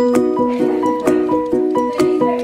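Background music: a quick melody of short plucked notes, about four a second, over a light steady beat.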